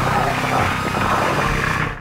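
A continuous burst of submachine-gun fire in a film soundtrack, with a man laughing over it about a second in.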